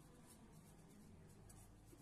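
Faint scratching of a pen writing on paper, a few light strokes over near-silent room tone.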